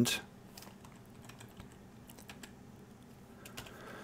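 Faint computer keyboard keystrokes, a few scattered clicks spread over a few seconds.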